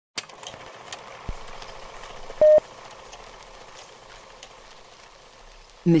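Old-film countdown leader sound effect: a steady hiss scattered with crackling clicks, and one short beep about two and a half seconds in. A woman's voice begins right at the end.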